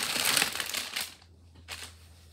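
Clear plastic kit packaging crinkling as a bundle of embroidery floss is pulled out of it, loud for about the first second, then dying away, with one short crinkle near the end.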